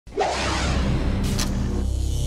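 A swoosh sound effect opening a show's intro music, with steady low bass tones beneath and a second short swish just past halfway.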